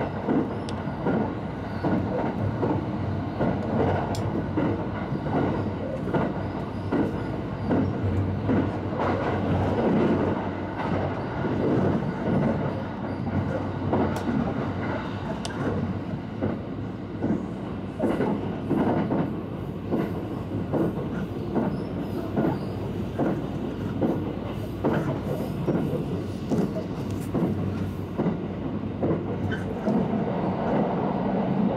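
Inside the passenger cabin of a Shirasagi limited express electric train running along: a steady rumble and hum, with frequent short clicks from the wheels over the rails.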